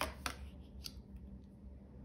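Tarot cards being handled and a card slid out and laid on a glossy tabletop: a few short snaps and swishes in the first second, then soft handling.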